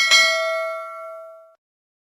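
Notification-bell sound effect of a subscribe-button animation: one bright ding that rings and fades out over about a second and a half.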